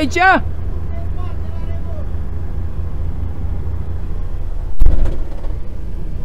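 A truck's diesel engine idling with a steady low rumble, heard from inside the cab. About five seconds in there is a single loud thump.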